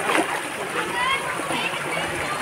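Steady rush of water flowing through a hot-spring pool, with a brief splash just after the start.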